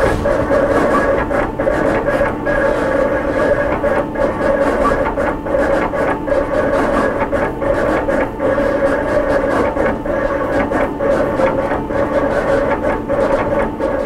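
Roland GX-24 servo-driven vinyl cutter cutting a design from heat-applied film: its motors give a steady whine as the blade carriage and the material shuttle back and forth, broken by quick, irregular ticks as they change direction.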